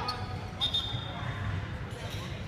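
Basketballs bouncing on a hardwood gym floor in a large hall, with a short high squeak about half a second in.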